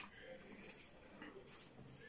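Near silence, with faint rustles of a sheet of printer paper being pressed and handled.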